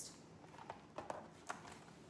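Handling noise from small leather goods being put down and picked up: a few faint, separate clicks and taps.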